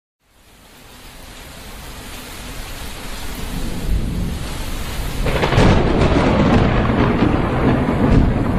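Rain and rumbling thunder fading in from silence and growing steadily louder, with a heavier surge of rain and rumble about five seconds in.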